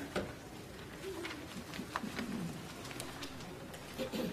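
Quiet lull in a church sanctuary just after the organ has stopped: faint low murmuring voices from the congregation, with a few small clicks and rustles.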